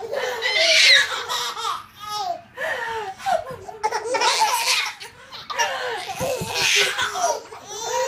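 Several babies laughing together, high-pitched and overlapping, in repeated bouts with short breaks between.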